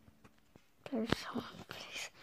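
Near silence, then about a second in a boy talking in a hushed, whispery voice with no clear words.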